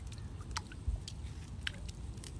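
A stick poked and stirred in shallow lake water, giving a few small wet clicks and splashes over a steady low rumble.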